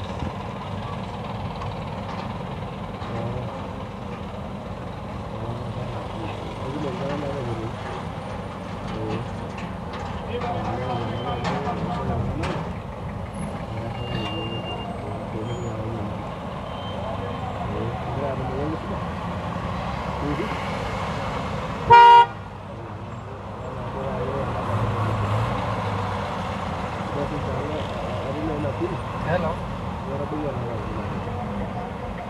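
Busy city-street traffic: engines running at low speed, with people talking in the background. About two-thirds of the way through, a vehicle horn gives one short, loud honk.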